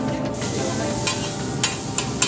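Beef steaks sizzling on a hot steel griddle, with a few sharp clicks of a metal spatula and knife against the plate.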